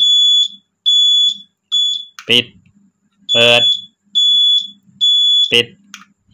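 Motorcycle turn-signal beeper sounding a high electronic beep about every 0.85 seconds while the indicator flashes. It stops about two seconds in when the indicator is cancelled, starts again a second later, and stops again near the end. With the new turn-signal relay fitted, the indicator now cancels when the switch is pressed firmly.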